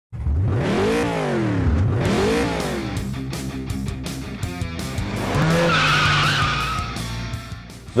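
Race car sound effects: engines rev up and down in two quick passes, rev again about five seconds in, then tires squeal, with music underneath.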